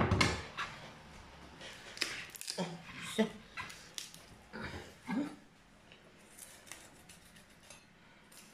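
A kitchen knife cutting through raw duck and knocking against a wooden cutting board, with hands tearing and pulling at the skin and fat. Short irregular knocks and clicks, the loudest right at the start.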